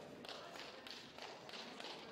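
A quick, uneven series of faint, sharp taps in a gymnasium hall, about six in two seconds.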